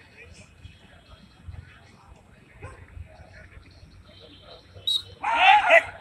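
A dog barking in a short, quick burst near the end, loud against a faint open-air background.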